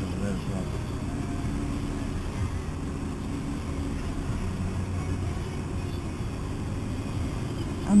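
Car engine idling while stationary, heard from inside the cabin as a steady low hum.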